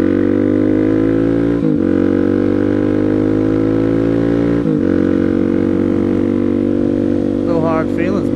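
Suzuki DR-Z400SM single-cylinder four-stroke motorcycle engine under way, the pitch climbing as it accelerates and dropping with upshifts about two and five seconds in, then holding steady at cruise.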